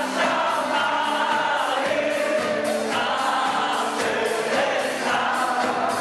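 Choral singing by a group of voices over a steady beat of about three strokes a second.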